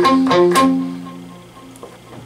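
Electric guitar on a clean amp tone picking the last notes of an arpeggiated chord pattern, one string at a time. The final notes ring on and fade away over about a second.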